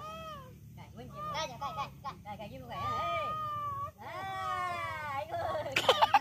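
High-pitched voices calling out wordlessly in a series of drawn-out calls that rise and fall in pitch, with a few short sharp sounds near the end.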